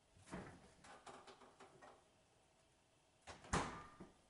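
A refrigerator door being opened, with a few light knocks and rattles as a bottle is taken out, then shut with a sharp thud near the end.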